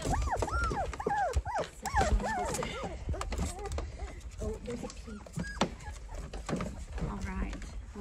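Labrador puppies whimpering and whining in short, high, rising-and-falling cries, many overlapping in the first three seconds and fewer after, with scuffling and small knocks of paws on a blanket in a plastic pool.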